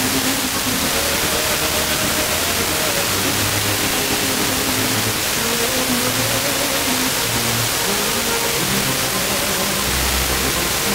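Blaupunkt car radio on 94.50 MHz FM picking up a weak, distant station: heavy, steady static hiss with faint music just audible beneath it. The weak signal comes by troposcatter propagation.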